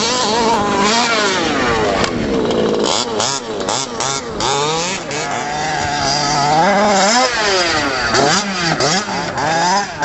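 Small two-stroke engine of a 1/5-scale HPI Baja RC truck revving up and down again and again as it is driven over dirt, the pitch rising and falling with each blip of throttle.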